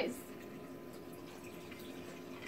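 Cocktail pouring from a glass coffee carafe over crushed ice into a glass: a faint, steady trickle.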